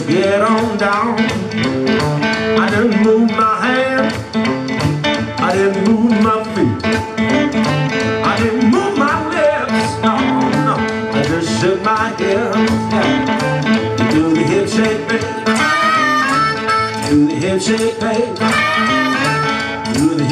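Live electric blues band playing an instrumental stretch of a shuffling boogie groove: drums, bass and electric guitars, with bending lead lines. A harmonica comes in over the band in the second half.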